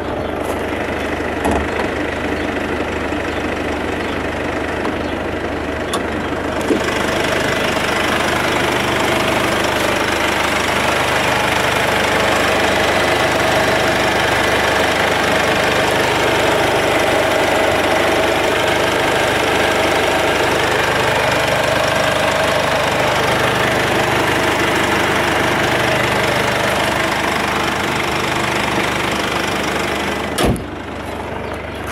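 Mercedes-Benz C220d's 2.2-litre four-cylinder diesel idling with a steady diesel clatter. It grows louder and clearer about seven seconds in, as the bonnet is raised over it.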